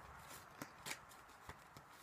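Near silence with a few faint clicks, about three, from a deck of tarot cards being handled in the hands.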